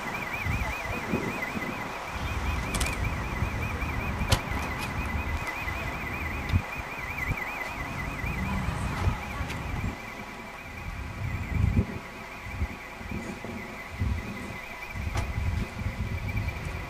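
Low gusty rumble of wind on the microphone. Under it runs a faint high whine that keeps warbling up and down, with a couple of sharp clicks in the first few seconds.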